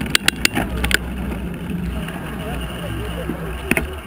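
Wind rumbling on the small camera's microphone, with a quick run of sharp clicks in the first second and two more near the end, over background voices.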